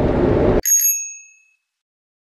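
Steady road noise from a Daihatsu Hijet Cargo kei van driving, recorded on an in-car action camera, cuts off abruptly about half a second in. A single bright bell-like chime sound effect then rings and fades out within about a second, leaving dead silence.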